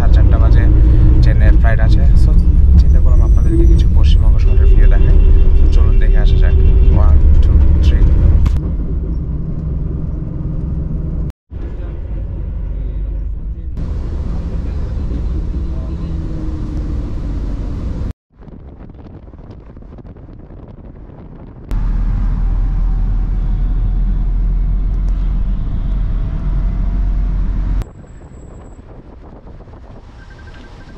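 Low engine and road rumble heard from inside moving vehicles, a coach and then a car, in several clips cut one after another. Voices sound over the rumble in the first, loudest stretch.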